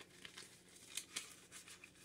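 Faint rustling and crinkling of paper banknotes and a clear plastic binder envelope being handled, in a few soft, scattered bursts.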